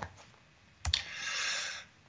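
A single sharp click about a second in, as the presentation slide is advanced, followed by a soft hiss lasting about a second.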